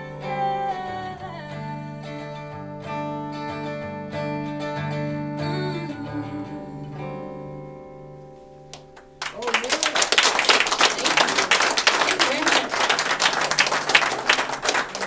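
Acoustic guitar playing the closing chords of a song, the notes left ringing and fading away. About nine seconds in, the small audience breaks into applause.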